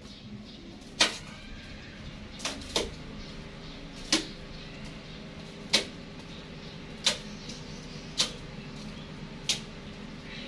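Sharp, short clicks and taps from fingers handling and pressing a small power-bank circuit board onto a used phone battery's plastic-and-metal casing, about eight of them at irregular intervals over a faint steady hum.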